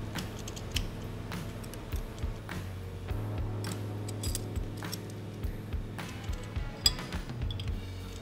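Background music with a steady low bass line, over light irregular clicks and clinks of a hex key and a steel boring tool being handled in a tool holder.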